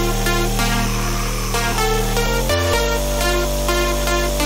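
Electronic future house loop playing: a long, held synth bass from a Vital 'Long Bass' preset being auditioned under short, repeating synth melody notes. The bass changes note about two and a half seconds in.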